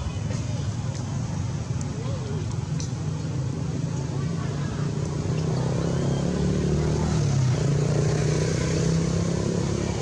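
Steady low engine-like hum, with people's voices faintly mixed in.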